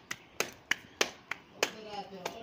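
Roti dough being slapped between the palms to flatten it: a steady run of sharp hand slaps, about three a second.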